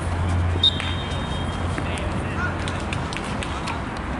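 Players' voices and shouts across a floodlit football pitch. A short, high whistle blast comes about half a second in, typical of a referee's whistle during the match.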